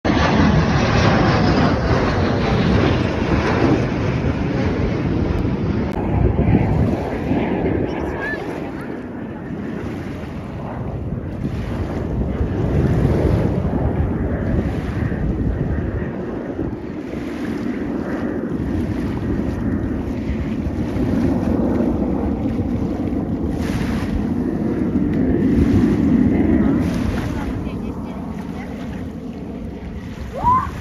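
Jet noise from Blue Angels jets flying overhead: a loud, steady rushing roar, loudest in the first few seconds, with wind buffeting the microphone.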